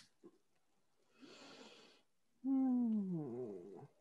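A breath in, then a drawn-out spoken "All…" from a person's voice, sliding down in pitch for about a second and a half.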